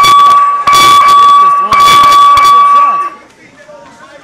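Boxing ring bell ringing loudly three times in quick succession, signalling the start of a round. It stops about three seconds in.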